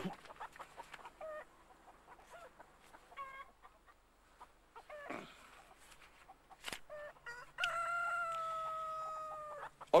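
A rooster crowing: a couple of short calls early on, then one long held crow of about two seconds that sinks slightly in pitch near the end. A single sharp click comes shortly before the long crow.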